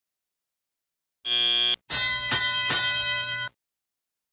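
Match field sound system: a short, steady electronic buzzer marking the end of the autonomous period, then a bell struck three times, ringing for about a second and a half, signalling the start of driver-controlled (teleoperated) play.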